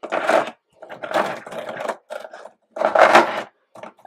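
Rubbing and scraping from a plastic stencil and paper being handled on a desk, in four short bursts.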